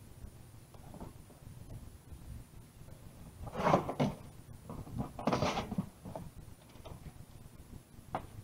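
A large cardboard shipping box being opened by hand: its flaps pulled back and rubbed, with two louder spells of cardboard scraping about three and a half and five seconds in.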